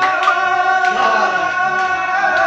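A man singing a Punjabi song live, holding long notes over a steady harmonium drone, with a few drum strikes.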